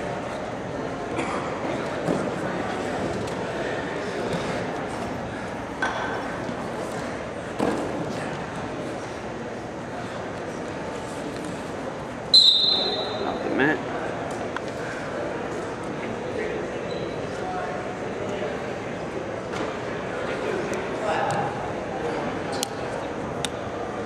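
Hall ambience of a college wrestling bout: a murmur of voices, with wrestlers scuffling and thudding on the mat now and then. About halfway through, a referee's whistle gives one short, sharp blast.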